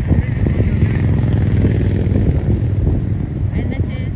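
A road vehicle passing close by: a low rumble that swells and then begins to fade near the end.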